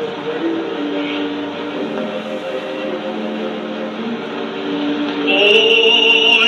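Old, hissy late-1920s sound-film soundtrack played into the room: held instrumental notes that change pitch a few times, with a singing voice coming back in about five seconds in.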